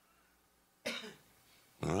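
A single short cough about a second in, in a quiet room, then a man starts speaking near the end.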